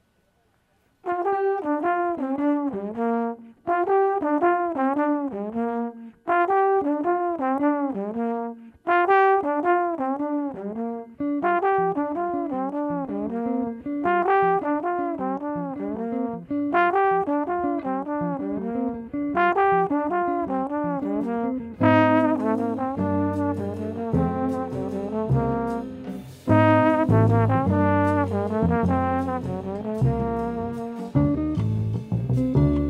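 Solo trombone plays the opening of a jazz tune: one short phrase with bending, scooping notes, repeated about eight times after a second of quiet. Near the end the rest of the jazz quartet comes in under it, with upright bass notes and drum cymbals.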